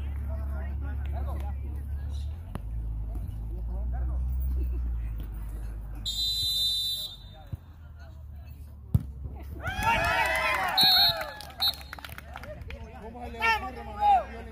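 Referee's whistle blows once for about a second, then about three seconds later a beach-soccer ball is struck with a single sharp kick. Several onlookers shout right after the kick, with a second short whistle blast among them. A steady low rumble fills the first half.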